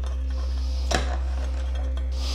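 A single light metallic clink about a second in, from an Allen key working a screw into the bar stool seat's metal mounting plate, over a steady low hum.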